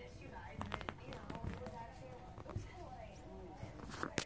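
Baby raccoon chattering in short, wavering calls while it wrestles with a boxer dog, with scuffling and a run of sharp clicks in the first couple of seconds.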